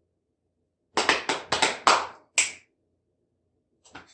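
About five sharp hand claps in quick succession, starting about a second in and ending before the three-second mark.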